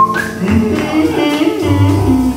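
Live jazz from a small combo: piano with plucked upright bass playing an instrumental passage.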